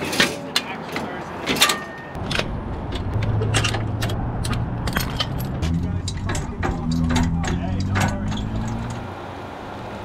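Metal clinks and rattles of trailer safety chains and hitch hardware being handled as a trailer is unhooked. From about two seconds in, a steady low motor hum joins them and fades near the end.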